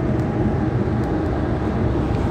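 A steady low rumble and hum with no clear starts or stops.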